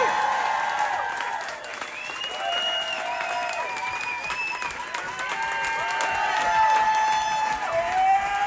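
Concert audience applauding and cheering at the end of a song, with whoops and shouts rising and falling over the clapping.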